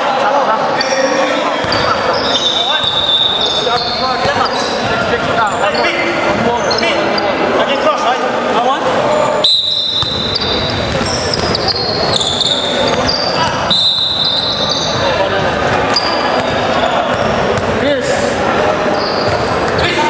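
Basketball game on a hardwood court: the ball bouncing, short high-pitched sneaker squeaks, and players' and onlookers' voices, all echoing in a large gym hall.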